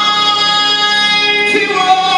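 A man singing gospel worship through a microphone and PA, holding one long steady note, then moving to a new note about a second and a half in.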